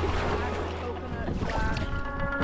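Sea water splashing and sloshing close to the microphone, with wind buffeting the microphone, over faint background music.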